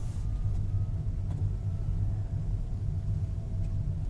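Steady low rumble of a Honda Odyssey Hybrid minivan on the move, heard from inside the cabin.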